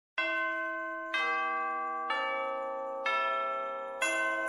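Four bell tones struck about a second apart, each ringing on with a slow fade as the next sounds, like tubular bells or chimes opening a Christmas soundtrack.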